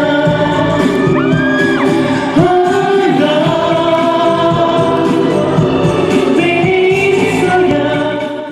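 A male singer singing a pop song live over a karaoke backing track, amplified through an arena sound system. A brief high gliding note cuts across between about one and two seconds in.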